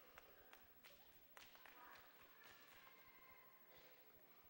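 Near silence, with faint scattered footsteps and taps from a group of children walking away, over a faint murmur of voices.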